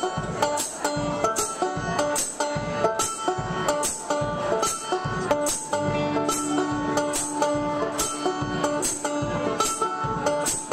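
Live folk band playing an up-tempo instrumental passage: fast banjo picking over acoustic and electric guitars, with a steady percussive beat. Recorded right next to a PA speaker, so the sound is loud and harsh.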